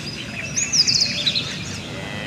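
Birds chirping: a quick run of high chirps about half a second in, followed by fainter scattered calls.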